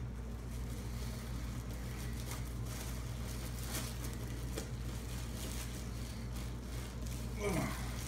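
Faint crinkling of a clear plastic bag as bagged resin statue parts are picked up and handled, a few soft crackles over a steady low hum.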